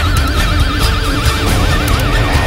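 Heavy metal instrumental: a lead electric guitar holds one high note with a wide, even vibrato over steady drums and bass.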